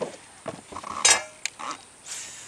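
Several sharp knocks and clinks of hard objects, the loudest a little after a second in with a brief ring.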